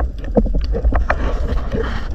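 Underwater noise heard through a GoPro's waterproof housing on a breath-hold spearfishing dive: a steady low rumble of water moving around the camera, with scattered small clicks and knocks, and a soft hiss in the second half.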